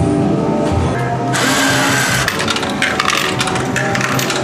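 Slot machine's electronic sounds over music, with rapid ticking as the won points count over into cash credit. About a second in, a dense noisy rattle lasts about a second, followed by a run of short clicks.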